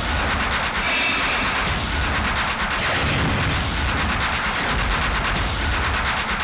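Dramatic background music built on rapid, heavy drum hits and booms, running at a steady loud level.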